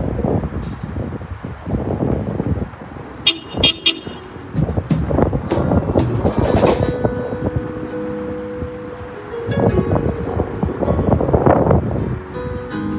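Car horns honking after a song ends, one horn held steady for about three seconds midway. Gusts of noise run throughout, with a few sharp clicks about three seconds in.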